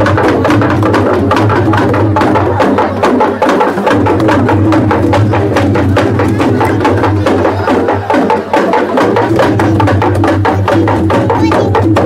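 A group of large two-headed wooden barrel drums, bound with bamboo strips and beaten by hand in a traditional folk dance, playing a fast, steady, interlocking beat over a low continuous hum.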